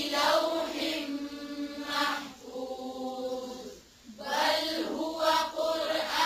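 Chanted Qur'an recitation in Arabic: a voice drawing out long held notes in tajweed style, breaking off briefly about four seconds in, then going on.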